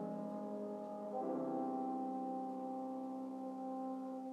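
Brass instrument playing soft held notes with piano accompaniment, moving to a new note about a second in.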